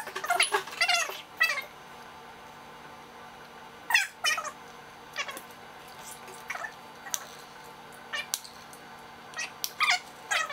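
Short, high-pitched squeaky calls, most falling in pitch: several close together in the first second and a half, then single calls every second or two, with another pair near the end.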